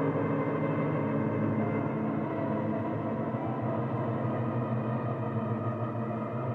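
Ambient background music: a steady synthesizer drone of low, sustained layered tones.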